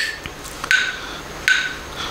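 Metronome app ticking: three even clicks about three-quarters of a second apart, each with a brief ringing tone.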